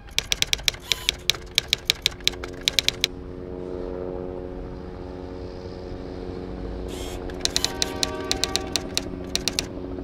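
Rapid typewriter-style key clicks, a sound effect for on-screen text typing out, in two bursts: one over the first three seconds and another in the second half. Under them runs a steady electronic drone of held low tones that swells after the first burst.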